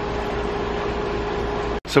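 Steady machine hum with a faint steady tone over an even hiss, cutting off suddenly near the end.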